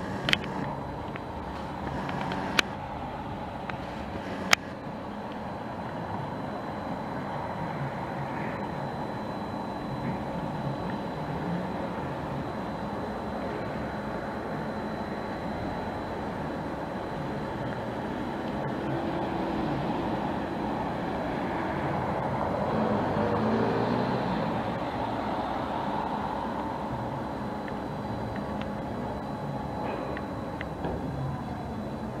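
Steady outdoor background noise with a constant mechanical hum made of several held tones. Three sharp clicks come in the first few seconds, and the noise swells slightly and then eases about two-thirds of the way through.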